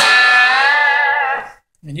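Electric guitar chord on a 1991 Epiphone Coronet fitted with a Kahler tremolo, struck once and held for about a second and a half. The pitch of the whole chord wobbles as the tremolo arm is worked, and the chord dies away shortly before the end.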